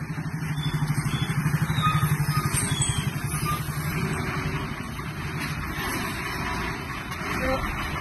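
A motor vehicle engine running with a steady low, rapidly pulsing throb, loudest a second or two in and then easing off.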